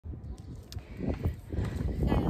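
Handling noise from the camera being set up: a low rumble with a few short knocks and rubs, getting louder about halfway through.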